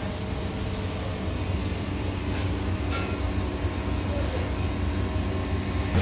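Steady low mechanical hum of restaurant kitchen machinery, with a few faint clicks.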